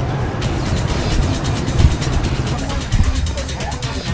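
Street noise: a steady low rumble of traffic with voices in the background.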